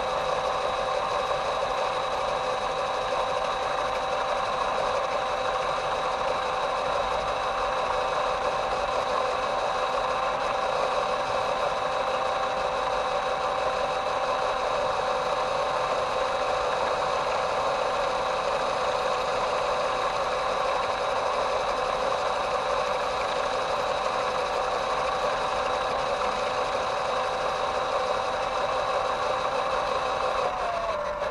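Electric motor and gearbox of a WPL B-1 1/16-scale RC military truck whining at one steady pitch as the truck drives at constant speed, heard up close from a camera mounted on the truck.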